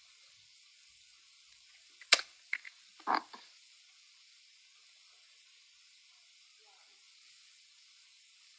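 A quiet steady hiss, broken about two seconds in by a single sharp click, followed by a couple of faint ticks and a short spoken "Oh".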